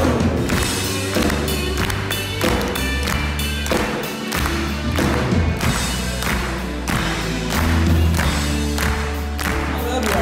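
A live country band playing a song through the PA, with a steady drum beat, bass and guitars.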